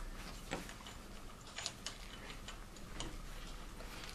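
A few faint, irregular clicks and light taps of small metal vise parts, pieces cut from steel channel, handled and knocked together by hand as they are fitted.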